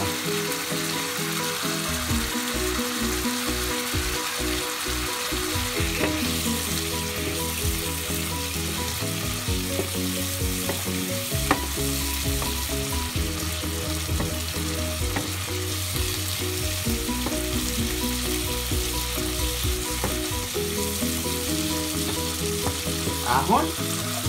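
Baby carrots and sliced onions frying in oil in a nonstick pan: a steady sizzle as a wooden spoon stirs them, with a couple of sharp clicks. A low hum that shifts in steps runs beneath.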